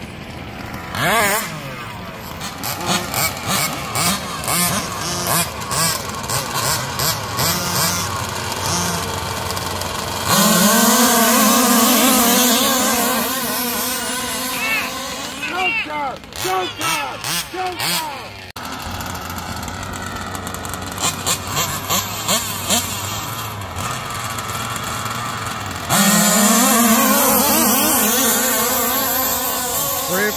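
Small two-stroke engines of 1/5-scale gas RC cars revving up and down as they are driven, with a buzzy, rasping note. Louder, closer stretches start abruptly about ten seconds in and again near the end.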